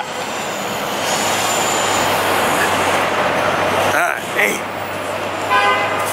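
City street traffic noise with car engines running, and a car horn sounding once, briefly, near the end.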